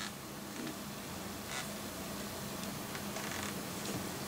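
Faint rustling and handling sounds with a few soft ticks, over a steady low hum.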